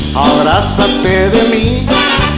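Live band playing a song, with a male lead singer's voice carrying the melody over the band.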